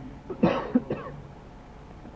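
A person coughing twice, short and sharp, about half a second in and again just before a second.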